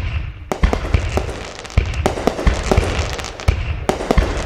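Fireworks going off: a quick run of bangs and pops, several a second, with crackling between them. It starts suddenly.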